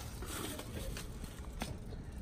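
Faint rustling and a few light clicks as items are handled in a metal filing-cabinet drawer.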